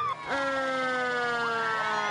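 Fire truck siren sounding as one long tone that slowly falls in pitch.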